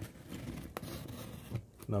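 Hand rubbing and scraping over a taped cardboard parcel, with a couple of sharp clicks.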